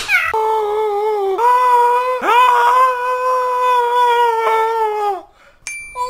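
A voice wailing on one long, high, held note for about five seconds, broken twice early on, then a short high beep near the end.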